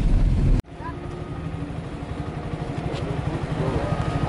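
Rumbling road noise inside a Kia car's cabin on a rough dirt road, cut off abruptly under a second in. A much quieter steady low rumble follows.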